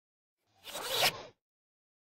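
A short noisy swish sound effect for a logo intro, under a second long, building to a peak and then cutting off sharply.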